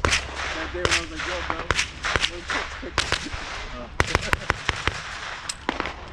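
Scattered gunshots from other shooters on the range: single shots about every second, and a quick string of about five shots around four seconds in.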